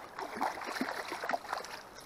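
A hooked sea trout splashing at the surface close by, in a run of irregular splashes and sloshing water that is busiest in the first second and a half and then dies down.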